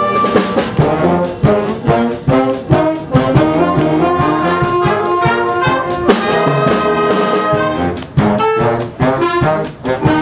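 Concert band playing a brass-led piece, with trombones and trumpets over a steady percussion beat of sharp strikes about four a second.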